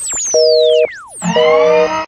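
Telephone busy-signal tone, a two-note beep switching on for half a second and off for half a second, mixed with swooping sound-effect sweeps that glide up and down in pitch. A low hum enters under it a little past the middle.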